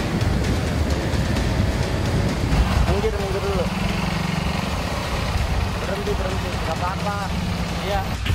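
Motorcycle and scooter engines running with road noise, a steady engine hum under the second half, and a voice breaking in with a few short calls.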